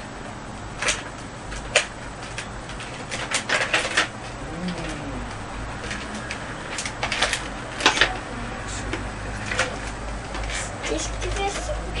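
Scattered short clicks and knocks of handling in a room, the sharpest just under 2 seconds in and around 8 seconds, with faint voices murmuring in the background.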